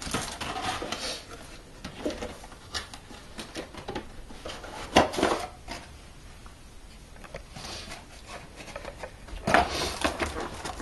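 Cardboard box packaging being handled and opened: flaps and an inner lid rustling and scraping in irregular bursts, with a sharper knock about five seconds in.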